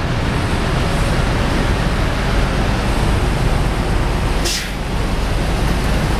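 Tuk tuk's small engine running as it rides through city traffic, heard from the open passenger seat with steady road and traffic noise. A brief sharp hiss cuts through about four and a half seconds in.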